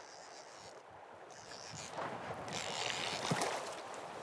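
Splashing in shallow river water as a hooked Atlantic salmon thrashes at the surface near shore. The splashing is faint at first and grows louder and busier in the second half, with one sharper splash near the end.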